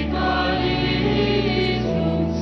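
Choir singing liturgical chant in sustained, slow-moving chords over a steady low accompaniment.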